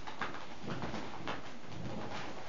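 A person blowing into the valve of a vinyl inflatable toy by mouth: breaths pushed in through the valve, with breaths drawn between them.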